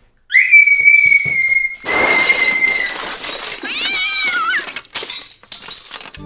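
A girl's shrill, high-pitched scream begins suddenly, rises and is held steady for about two and a half seconds. About two seconds in, a loud crashing, clattering noise starts, and a second, shorter wavering scream comes near the middle.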